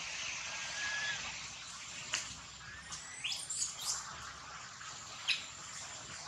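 Birds chirping: a handful of short, sharp high chirps and whistles over a steady outdoor hiss, the loudest about five seconds in.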